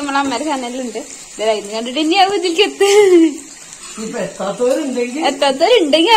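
Chicken pieces deep-frying in oil in a kadai, a steady sizzle beneath a person talking almost throughout.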